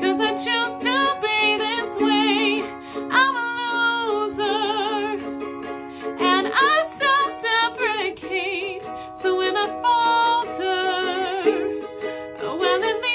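A woman singing long held notes with vibrato, some sliding up in pitch, to a strummed Lanikai ukulele.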